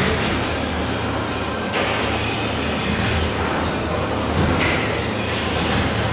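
Steady low machine hum with a rushing noise from kitchen equipment running, the noise shifting slightly about two seconds in.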